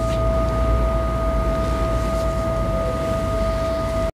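A steady tone held at one unwavering pitch, with a fainter tone an octave above, over a low rumble. It cuts off abruptly at the end.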